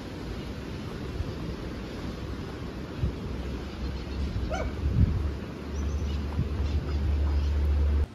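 A dog gives one short bark about halfway through, over an outdoor low rumble that builds and is loudest near the end.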